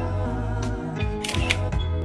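Background music with a steady beat; a little past the middle, a camera shutter sound effect clicks twice in quick succession.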